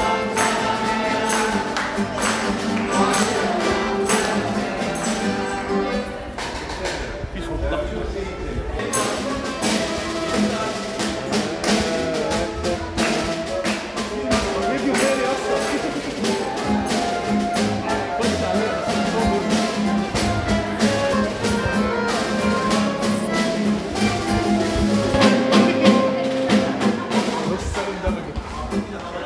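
A live folk ensemble of saxophone, clarinet, accordion and a plucked long-necked lute playing a song without a break, with a group of voices singing along and light percussion.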